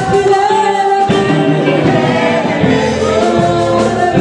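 Church congregation singing a gospel worship song together in chorus, over a steady low musical accompaniment.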